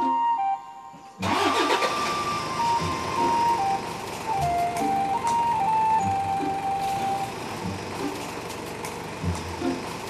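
An SUV's engine starts just over a second in and keeps running steadily, under background music with a flute-like melody.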